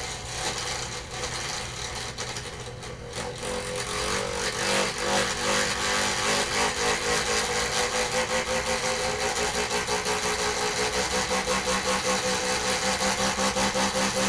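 Small electric motor spinning an aluminium disc, its whine building a few seconds in and then holding steady with a slight regular pulsing.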